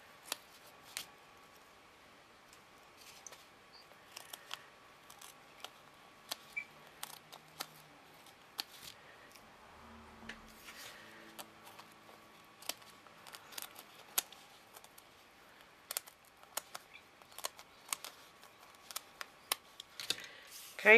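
Scissors snipping at the edge of a packing-foam disc, trimming it off: faint, scattered short snips and clicks at irregular intervals, with handling of the foam between cuts.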